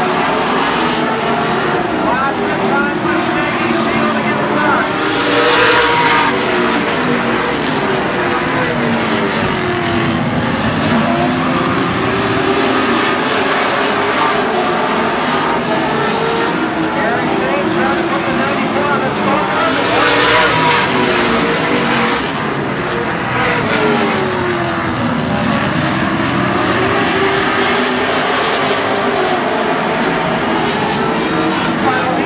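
A pack of late model stock cars racing on a short oval, their V8 engines rising and falling in pitch as they lap. The sound swells as the pack passes closest, about five seconds in and again about twenty seconds in.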